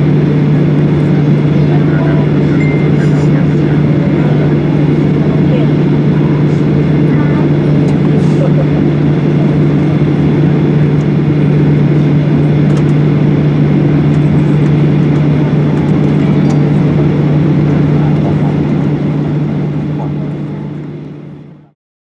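Steady cabin hum inside a parked Boeing 737-800, one constant low drone with airy noise over it, fading out near the end.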